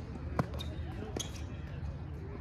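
Tennis ball hits in a rally on a hard court: a sharp pop about half a second in, and a fainter one a little over a second in.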